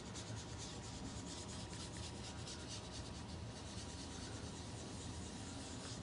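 Sponge dauber dabbing and rubbing ink onto cardstock through a paper template: faint, quick, repeated scratchy strokes, as the ink is blended to shade a die-cut balloon shape.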